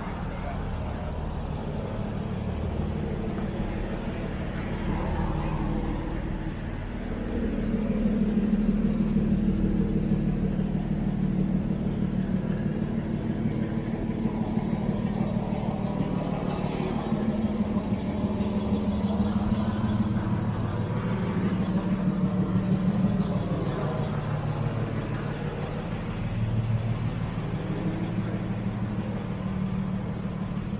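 Street ambience: a motor vehicle's low engine hum, which gets louder about seven seconds in and holds for most of the rest, with voices of passers-by in the background.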